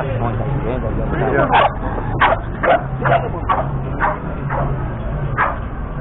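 A dog barking, a run of about eight short, sharp barks starting about a second and a half in, over street chatter.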